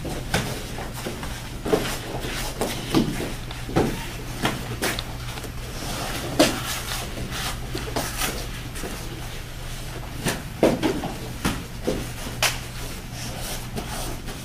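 Irregular thuds and slaps of children's taekwondo sparring: padded kicks and punches landing and feet stamping on foam mats, about a dozen knocks at uneven intervals over a steady low hum.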